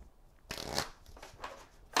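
Cardboard card box and oracle card deck being handled, the deck sliding out of its box: soft papery scraping and rustling of cards that starts about half a second in.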